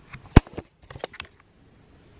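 A sharp knock about a third of a second in, followed by a few lighter clicks and taps: handling noise as the camera is picked up and moved.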